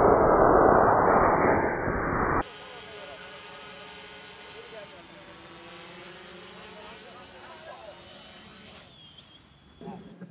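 A loud rushing noise cuts off suddenly about two and a half seconds in. Then a hexacopter's six brushless motors and propellers hum quietly in flight, several tones drifting slowly up and down in pitch.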